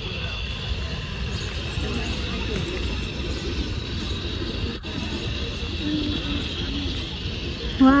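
Steady outdoor background noise with a low rumble and faint, distant voices of passers-by.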